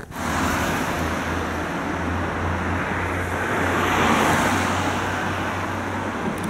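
Road traffic on wet asphalt: car tyres hissing on the wet road over a low engine hum, swelling as a car passes about four seconds in.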